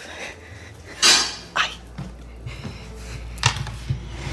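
Handling and bumping noises as a person squeezes into a cramped hiding spot while holding a camera: a sharp clatter about a second in, then a few light knocks and rustles.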